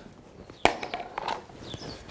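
A small plastic tub of dental impression putty being opened and handled: one sharp click about two-thirds of a second in, then faint rustling.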